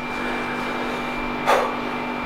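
A steady machine hum holding a constant pitch, with a short rush of noise like a breath about one and a half seconds in.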